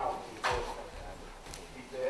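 Indistinct voices calling out, with one loud shout about half a second in.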